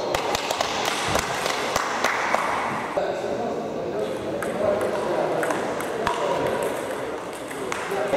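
Sharp, scattered clicks of a table tennis ball striking bats and the table, with voices in the background.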